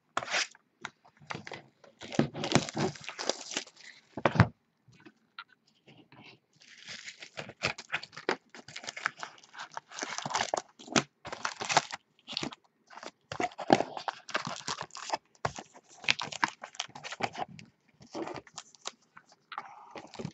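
Cardboard hobby box being torn open by hand, and plastic-wrapped trading-card packs crinkling and rustling as they are lifted out and set down in stacks. The crinkling comes in irregular bursts, busiest in the middle.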